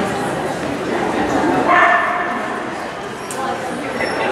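Dog barking in a large indoor arena, amid a steady murmur of voices, with one louder burst about halfway through.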